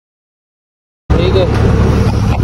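Dead silence for about the first second, then a sudden cut-in of a loader's engine running with a steady low rumble.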